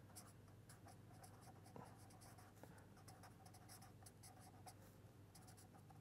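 Faint scratching of a pen writing on paper, a quick run of short strokes, over a low steady hum.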